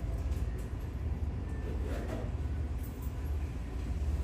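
Airbus A320-family airliner's twin jet engines at taxi power, a steady low rumble.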